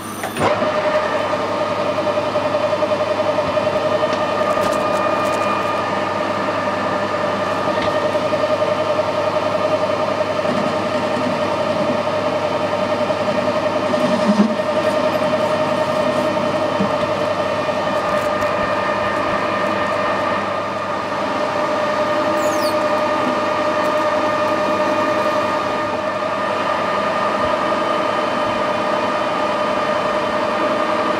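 Metal lathe running steadily with a whine from its geared headstock while a tool faces the end of a spinning aluminium bar.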